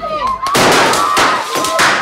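A loud, dense burst of noise lasting over a second, full of sharp cracks, over a steady high tone that carries on afterwards.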